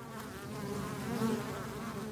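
Honeybees buzzing: a steady hum of many wings with a slightly wavering pitch.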